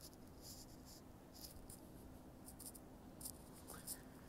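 Near silence: room tone with a faint steady hum and a few faint, scattered high ticks.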